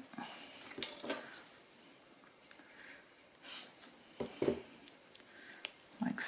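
Faint handling sounds of a small glued card tab being pressed and worked between the fingers: a few soft rustles and light taps, the loudest about four seconds in.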